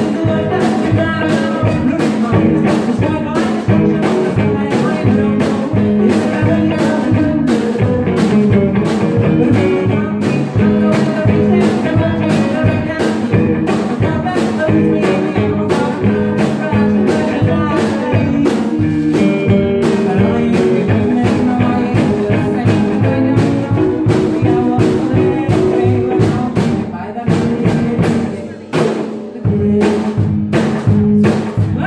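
A live duo of a woman singing and a strummed guitar in a blues-rock style, with a steady strumming rhythm and a brief break in the strumming near the end.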